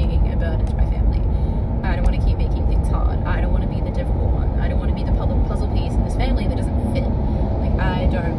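Steady road and engine noise inside a moving car's cabin, with a woman's voice speaking quietly now and then over it.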